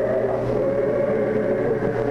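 Unaccompanied Russian Orthodox church choir singing sustained, slowly changing chords.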